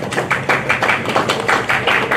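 A small group of people clapping: many quick, uneven hand claps running together.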